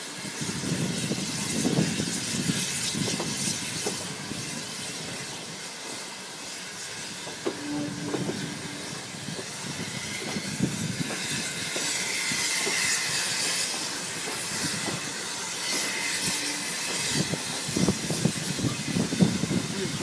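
Rumble and rattle of a steam-hauled heritage train's passenger carriage rolling over the rails into the terminus, heard from on board, with a brief steady tone twice and a few sharper knocks near the end.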